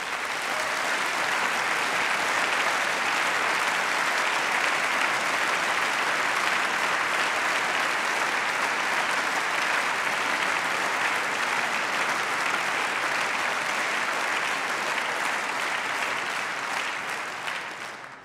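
Sustained applause from a large assembly of members of parliament clapping. It swells in at once, holds steady and dies away near the end.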